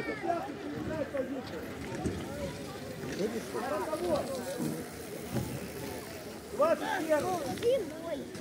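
Several people's voices talking and calling out, unclear, over steady outdoor background noise, louder in bursts near the middle and toward the end.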